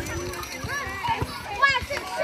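A crowd of many adults and children talking and shouting over one another, with a louder high-pitched shout near the end.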